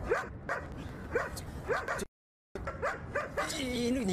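A dog barking and yipping in short rising calls, with the sound cutting out completely for a moment a little past halfway.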